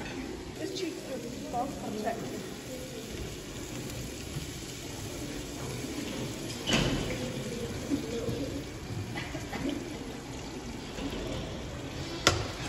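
Cooking oil poured from a bottle into a pan of sliced onions, with a spoon stirring and a sharp metal clank about halfway through, under indistinct talk.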